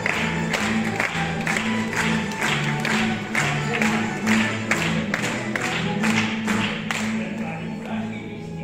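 Plucked-string orchestra of mandolins and guitars playing a lively tune, with sustained low notes under a steady strummed beat of about two to three chords a second.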